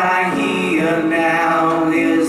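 Live rock band playing, with male voices singing held, bending notes in harmony over electric and acoustic guitars.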